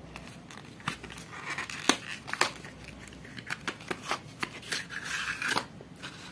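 Small cardboard box of an IKEA LIVBOJ wireless charger being opened by hand: irregular clicks and scrapes of card as the lid is worked loose, with a couple of longer rustles as the paper leaflets inside are slid out.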